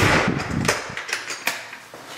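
A door being pulled shut by its knob with keys in hand. A loud rush of handling noise comes as it swings closed, then a few sharp clicks of the latch and keys against the knob.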